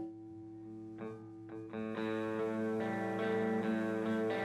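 Electric guitar picking a quiet song intro: sustained, ringing notes enter about a second in and settle into a steady pattern from about two seconds in.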